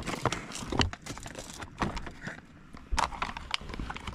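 Plastic rehydrated-meal pouch being handled: irregular crinkles and sharp clicks of the bag.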